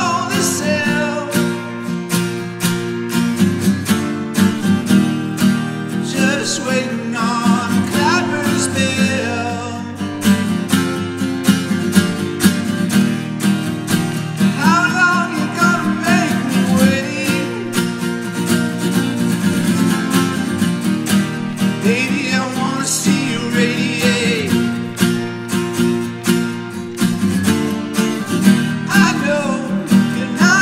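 Steel-string acoustic guitar strummed steadily in a solo song, with a man's voice singing over it at several points.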